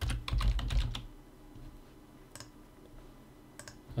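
Computer keyboard typing: a quick run of keystrokes in the first second as a short word is typed, then a couple of lone clicks, one about halfway through and one near the end.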